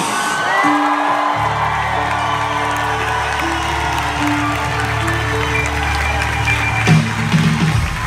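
Live pop band music heard from the audience in an arena: long held keyboard and bass notes, a deep bass note coming in about a second and a half in and holding until near the end, with the crowd cheering and whooping.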